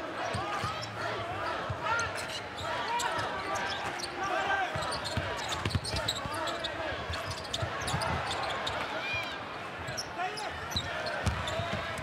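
A basketball being dribbled on a hardwood court, short knocks heard through the steady chatter of an arena crowd.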